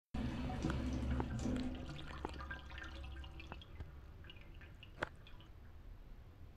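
Water dripping and trickling, with many small plinks at first that thin out as the sound fades, and one sharp click about five seconds in.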